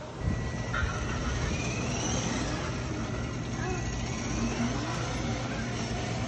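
Battery-powered children's ride-on toy car driving across a concrete driveway: a steady electric motor and gearbox hum that starts a moment in, with its wheels rolling on the concrete.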